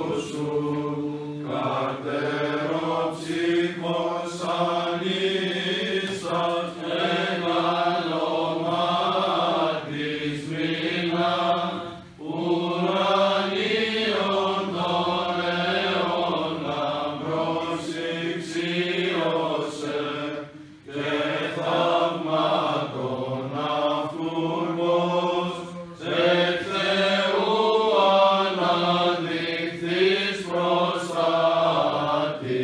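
Greek Orthodox priests chanting a Byzantine hymn, men's voices moving through a melody over a steady held low drone (the ison), with short breaks for breath about 12 and 21 seconds in.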